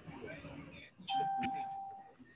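A single bell-like chime about a second in: one clear tone that starts suddenly, rings for about a second and fades.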